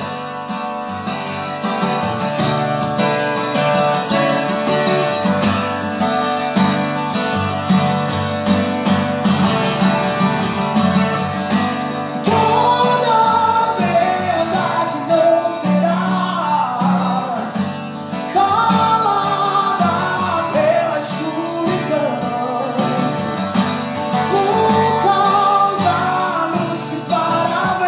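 Acoustic guitar strummed in a steady rhythm, with a man's singing voice coming in strongly about halfway through.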